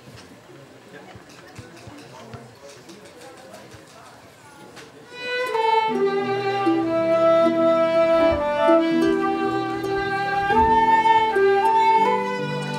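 Fiddle, flute and harp start a tune together about five seconds in, playing long held notes in several parts. Before that there is only low background murmur.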